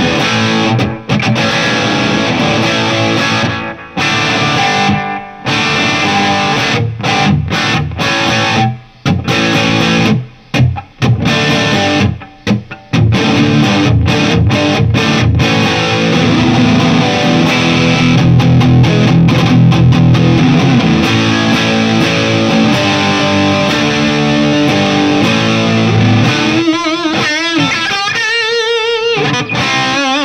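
Gibson SG electric guitar played through a Marshall JCM2000 amplifier on its gain channel, giving a distorted tone. It plays choppy riffs with several sudden stops in the first half, then sustained ringing chords, then held notes with wavering vibrato near the end.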